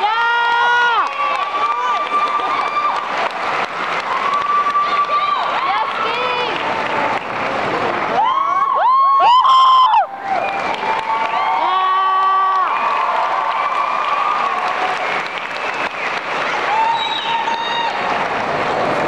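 Audience cheering and applauding, with many high-pitched shouts and screams over the clapping. The screams are loudest about eight to ten seconds in.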